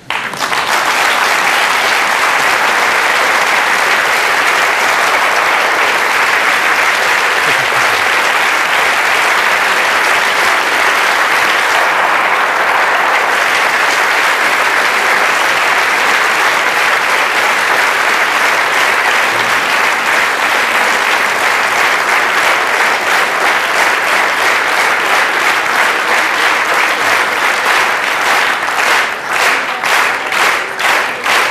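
Audience applauding a finished lecture: a dense, steady clatter of many hands that starts suddenly. In the last several seconds it falls into evenly timed, rhythmic clapping of about three claps a second.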